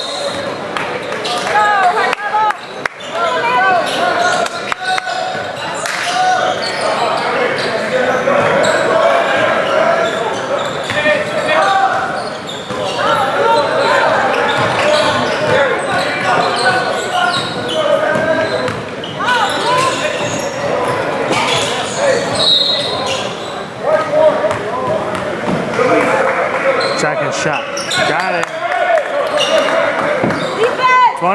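Crowd and players' voices chattering in a large, echoing gymnasium, with a basketball bouncing on the hardwood floor now and then.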